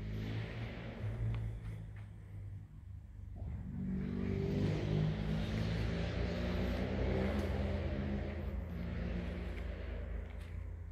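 Harley-Davidson Fat Bob's Milwaukee-Eight V-twin engine running with a low, pitched note. It dips briefly about three seconds in, then from about four seconds in runs louder and fuller at a fairly steady pitch.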